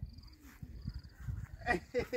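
Low footfalls and rustling while walking through a grassy garden path, with a faint high chirping trill twice in the first second. A short voice-like call, the loudest sound, comes near the end.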